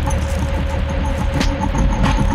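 Intro sound design under an animated logo: a deep, rumbling bass with a steady tone over it and a sharp hit about one and a half seconds in.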